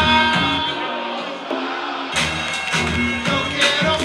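Live hip-hop music through a club PA: a beat with a sustained sampled melody. About a second in, the bass and drums drop out for roughly a second, then crash back in.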